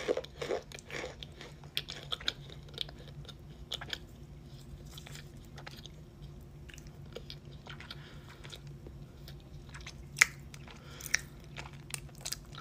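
Chewing and crunching chunks of cornstarch close to the microphone: dense crisp crunches in the first few seconds as a piece is bitten off, then slower, sparser chewing with a couple of sharper crunches near the end.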